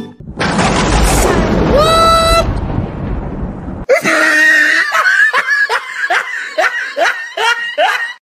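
Cartoon comedy sound effects: a loud noisy blast with a short scream that rises and then holds, then, about four seconds in, a long burst of hearty laughter at about three 'ha's a second.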